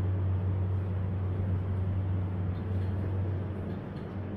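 Otis 2000 hydraulic lift travelling down with its doors shut, a steady low hum with a faint rumble heard inside the car.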